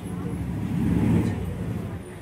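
A man's voice chanting Sanskrit mantras into a microphone through a loudspeaker, indistinct and low, swelling louder about a second in.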